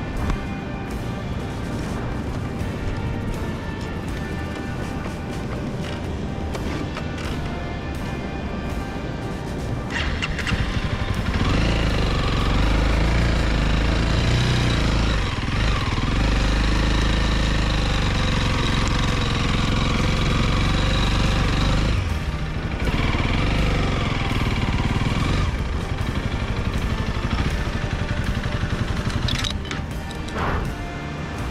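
Background music over a Honda CRF300L's single-cylinder engine on a sand beach. The engine works much harder and louder for about ten seconds in the middle as the loaded bike is worked through soft sand.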